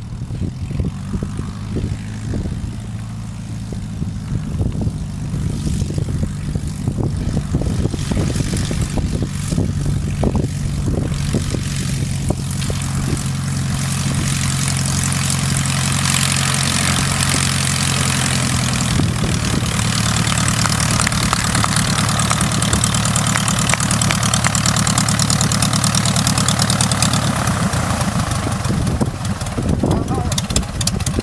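Baby Ace light plane's engine and propeller running at a steady low power, growing gradually louder as the plane comes closer.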